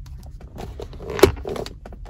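Plastic lid of a disposable cold cup clicking as it is pressed down onto the cup, with a few light clicks and one sharp snap about a second in. The lid won't stay seated and pops back up.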